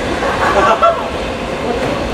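Train of old-type passenger coaches rolling away along the track, a steady low rumble of wheels on rails. Voices talk over it just after the start.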